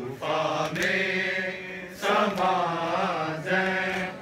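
Men chanting a noha, a Shia lament, together in long sung phrases with short breaks between them.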